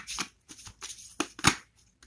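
A deck of tarot cards being shuffled by hand: a quick run of short, papery swishes and snaps, the sharpest about a second and a half in.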